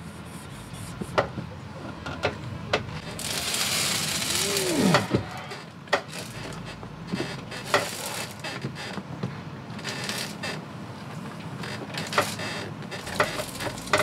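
Scattered knocks and clicks of hands and tools working at a motorhome's entry-step treads, with a louder rushing, hissing noise for about two seconds a few seconds in.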